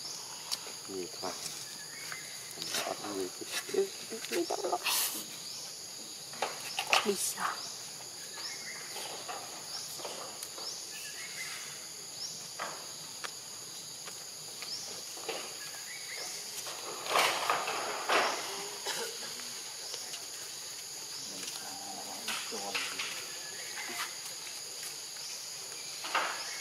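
Constant high insect drone in several steady tones, with scattered short voices and sharp clicks over it; the loudest is a brief burst about 17 seconds in.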